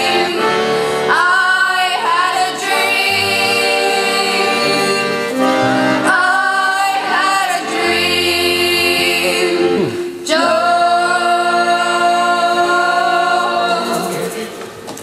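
Live acoustic folk band: several voices singing together over an accordion and strummed acoustic guitars. It closes on the song's final long held chord in the last few seconds.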